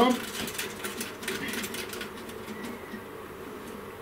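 Threaded metal collar of a round, screw-on spindle cable connector being turned by hand onto its socket on the CNC control box. A run of faint, fast clicks and scrapes fills the first two seconds or so, then only quieter handling noise.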